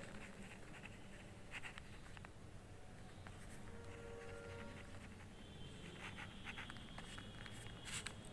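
Pen scratching on paper as words are written by hand, faint, in short strokes with a pause in the middle.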